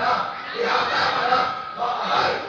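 Loud, impassioned shouting voices with long drawn-out syllables: a man's raised voice and a crowd calling out.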